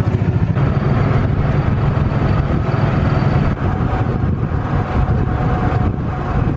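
Golf cart driving along a paved road: a steady, loud rumble of running gear and road noise.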